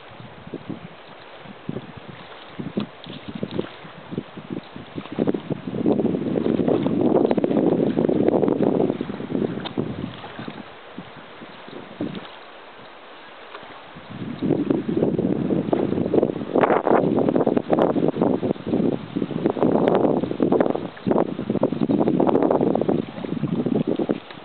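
Wind buffeting the camera microphone in gusts, a rumbling rush that swells about a third of the way in, drops off, and returns strongly for the second half.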